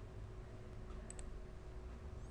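Two quick computer mouse clicks in close succession about a second in, over a low steady hum.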